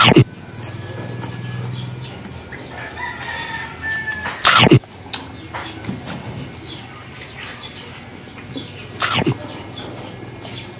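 Close-up chewing and lip-smacking of two people eating roast pork leg, with three loud smacks about four and a half seconds apart and softer mouth clicks between. A rooster crows faintly in the background about three seconds in.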